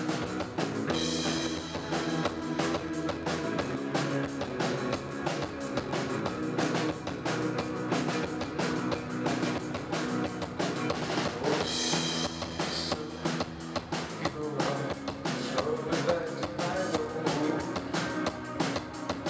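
A live post-punk band plays an instrumental passage without vocals. The drum kit drives a steady beat under electric guitar and bass, with cymbal crashes about a second in and again around two-thirds of the way through.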